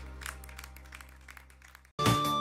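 A live band's music dying away at the end of a song, its last held low notes fading out, with a few scattered claps from the audience. The sound falls to near silence just before the end.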